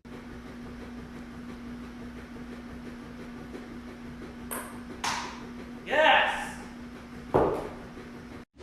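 A golf ball struck off a practice mat with a sharp click, a second knock as it lands about half a second later, then an excited yell and another sharp knock, over a steady low hum.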